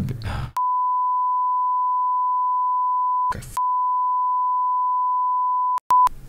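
A steady single-pitch censor bleep covering swearing. It starts about half a second in and runs in two long stretches, broken by a brief snatch of voice a little past halfway, and cuts off just before the end.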